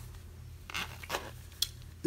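Cotton-gloved hands rubbing and turning a hard-sided zippered watch travel case, with a few short, faint scrapes and rustles in the second half.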